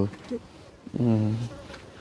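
A short, low, steady voiced hum of assent ("mm") about a second in, over a faint insect buzz.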